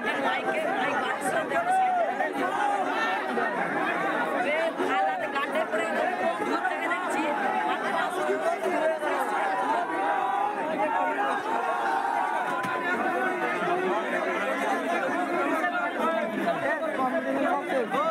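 A dense crowd of many people talking at once, a steady babble of overlapping voices with no music.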